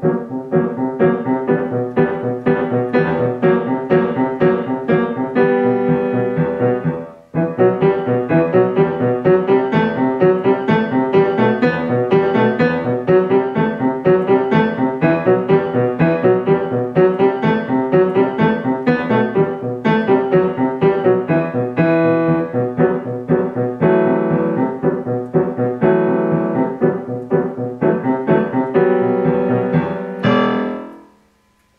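Grand piano played at a fast, stampeding tempo, notes struck in a driving, even rhythm, with a brief break about seven seconds in.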